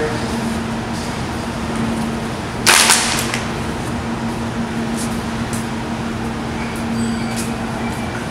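Push broom sweeping a tiled floor, with a steady low hum underneath. A single sharp knock about three seconds in, and a few fainter clicks near the end.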